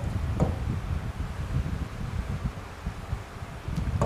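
Low, uneven background rumble with a faint tap about half a second in.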